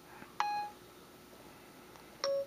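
iPhone 4S dictation chime: one short, steady electronic beep about half a second in, right after a spoken phrase, with faint room tone around it.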